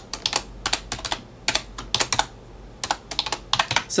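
Computer keyboard typing: short irregular runs of keystrokes with brief pauses between them.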